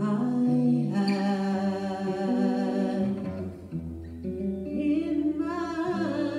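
A woman singing long, held notes live, accompanied by acoustic guitar.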